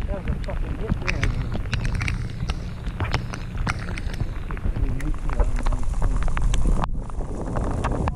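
Wind rumbling on the microphone in steady rain, with many irregular sharp ticks of raindrops striking close by.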